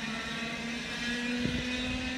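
Distant F100 racing karts' 100cc two-stroke engines droning steadily on track, with a second, higher engine note joining about halfway through.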